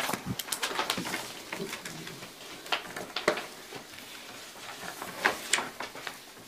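Sheets of paper being handled and shuffled at a table: a run of short rustles and light taps, irregularly spaced.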